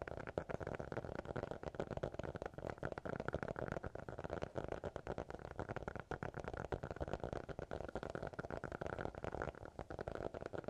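Fingers tapping rapidly on the cover of a black hardcover notebook, a dense, continuous run of soft taps many times a second.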